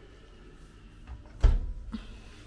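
Built-in oven's drop-down door swung shut, with a faint click about a second in and then a single sharp clunk as it closes.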